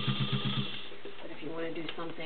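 White Model 265 sewing machine, with its 1.3-amp motor, running and stitching through three layers of garment leather in an even rhythm of about ten needle strokes a second. It stops about two-thirds of a second in.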